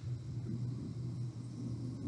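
A low, steady hum with faint background hiss: the open-line room tone of a video call.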